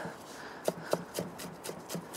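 Chef's knife chopping Thai basil on a wooden cutting board: a quick, even run of light knocks, about four a second.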